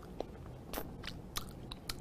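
A hard-candy lollipop being sucked in the mouth: a few faint, sharp clicks of the candy and the mouth, spaced about half a second apart.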